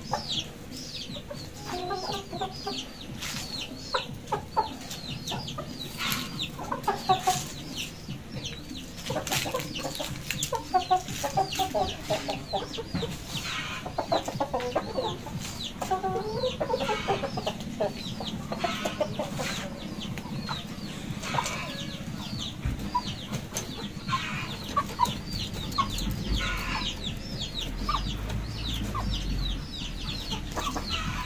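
Caged chickens clucking, with short high falling chirps repeating rapidly throughout. There is a low rumble near the end.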